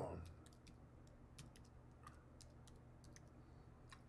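Faint computer keyboard typing: scattered, irregular key taps and clicks while a web search is typed.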